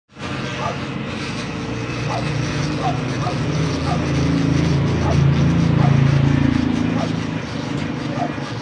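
Corded electric hair clipper running with a steady buzz, louder for a few seconds in the middle.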